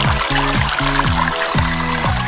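Background music with a steady beat, about three beats a second.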